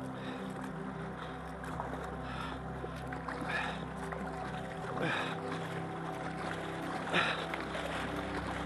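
Kayak paddle strokes splashing in the river every second or two, over music with long sustained notes.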